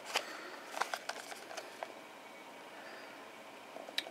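Quiet handling noise from a small cardboard box being turned in the fingers: a few light ticks and rubs in the first two seconds, then quiet room tone, and one sharper click right at the end.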